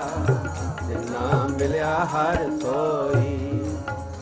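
Gurbani kirtan: voices singing a slow, wavering melodic line over a harmonium's held notes, with tabla strokes underneath.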